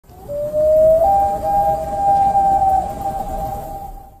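Intro sound over the logo: a long tone that slides upward, steps up to a higher note about a second in and holds it, over a low rumbling bed, then fades out at the end.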